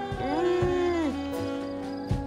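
A wolf-like howl that rises, holds and falls, lasting about a second, over eerie background music with a low, slow beat.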